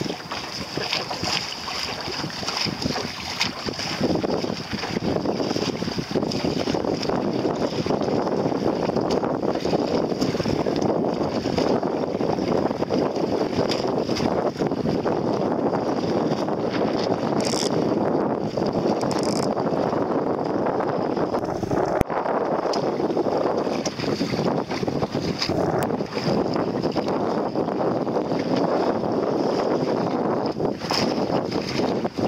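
Wind buffeting the microphone over the rush and splash of water along a small boat moving through light chop, a steady noise that grows louder about four seconds in.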